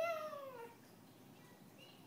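A high, sing-song voice drawing out the word "fishy", its pitch sliding down and fading out before the first second is over; then faint room tone.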